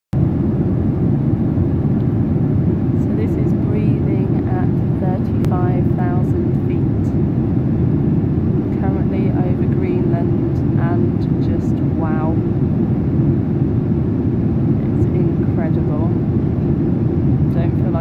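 Airliner cabin noise at cruising altitude: a loud, steady low rush of engine and airflow that never changes. Faint voices are heard at times.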